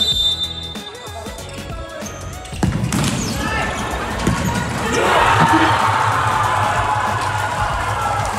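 Futsal ball being kicked and bouncing on an indoor hall's wooden court during a free kick and its rebound, after a referee's whistle right at the start. Players' and spectators' shouting rises about five seconds in as the rebound goes in for a goal, over background music.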